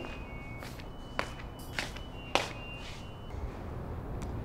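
Footsteps on a hard floor: three sharp steps about half a second apart, the third the loudest, over a low steady hum.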